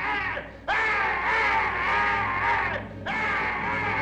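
A man wailing in long, wavering cries, each lasting about two seconds, with a short break before each new cry.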